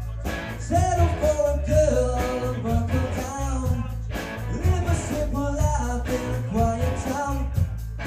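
Live rock band playing a mid-tempo rock song on electric guitars, bass and drums, with a heavy, pulsing low end.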